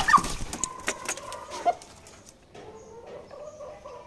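Water splashing in a clay tub as a broody hen is dunked, then the wet hen calling: a held call in the first two seconds and a softer, lower one near the end. Wetting the hen is meant to break her broodiness.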